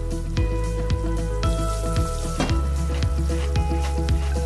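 Potato fries sizzling in hot oil in a stainless-steel commercial deep fryer set to 180 °C, heard over background music with a steady beat.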